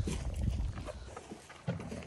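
Faint scattered crunches and shuffles from a Scottish Highland bull eating carrots off the grass, under a low rumble in the first half second and a sharper click near the end.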